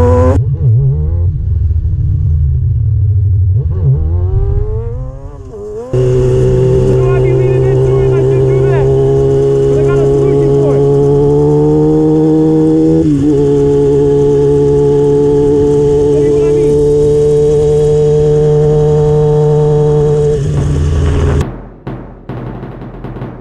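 Sport motorcycle engine revving up at the start, then running with low rumble for several seconds. About six seconds in it jumps to a loud, steady, even note held at constant revs, with a brief dip in revs about halfway through. It falls away just before the end.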